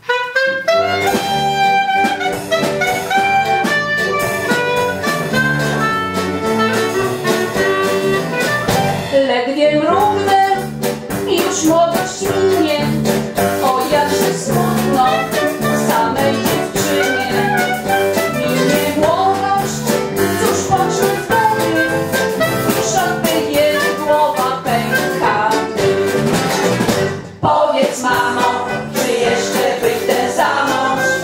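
Women's vocal group singing a playful, jazz-flavoured song over instrumental accompaniment with brass, the music starting right at the outset and briefly dropping away near the end.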